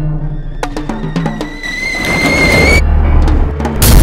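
Cartoon score with timpani and percussion hits, a rising whistle tone in the middle and a low rumble building up. Near the end a loud cartoon explosion bursts in.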